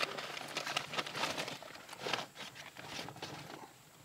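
Paper crinkling and crackling in quick irregular snaps as it is handled and catches light, thinning out and quieter near the end.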